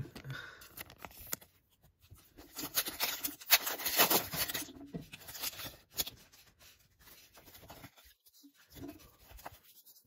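Foil Pokémon booster pack wrapper crinkling and being torn open: dense crackling for a couple of seconds, loudest about four seconds in, followed by fainter rustling. A short laugh at the start.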